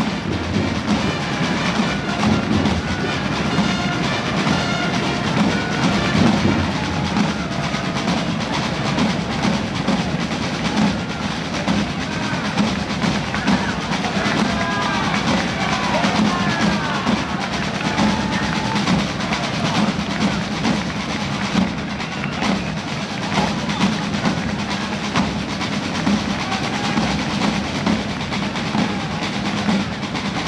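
Snare and bass drums playing a rapid, roll-filled rhythm.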